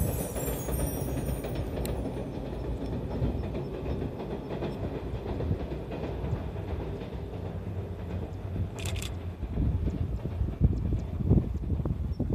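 Distant train running across a steel girder railway bridge: a steady rumble of wheels on the bridge, with louder low rumbles near the end.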